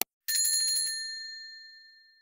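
A single click, then about a quarter second in a bright bell ding that rings on and fades away over about two seconds: a notification-bell sound effect.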